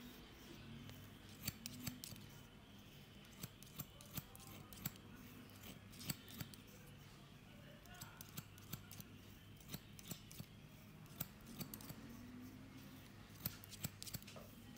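Barber's scissors snipping beard hair, quiet sharp clicks coming in irregular runs of a few at a time, over a low steady hum.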